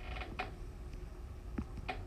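Faint handling noise: a few soft clicks and a creak over low room hum.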